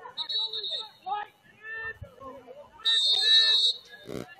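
Referee's whistle blown twice during a lacrosse game: a short blast near the start, then a longer, louder blast about three seconds in. Voices call out on the field around it.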